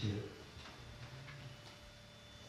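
A man's amplified voice ends a word. Then comes a quiet pause of room tone with faint ticks, about two a second, and a faint steady tone.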